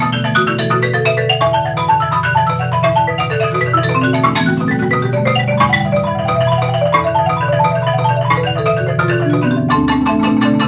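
Two concert marimbas played together with yarn mallets: a dense run of quick struck notes in the middle and upper register over sustained low notes, without a break.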